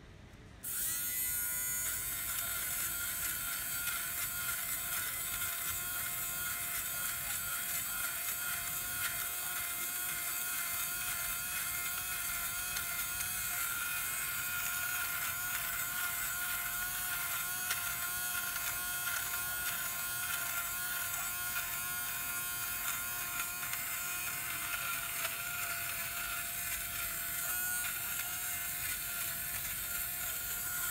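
Evercare battery-powered fabric shaver (sweater shaver), run on two AA batteries, switching on about a second in and then running with a steady whine as it is passed lightly over a knit sweater to shave off pilling.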